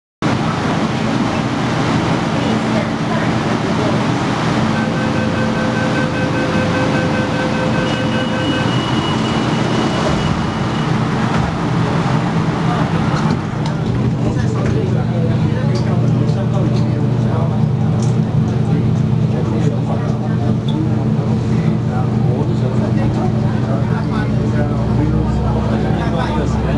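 Running noise of an MTR K-train heard from inside the car as it moves along a station platform, with a steady low hum that grows stronger in the second half. A set of steady high tones sounds for several seconds, starting about five seconds in.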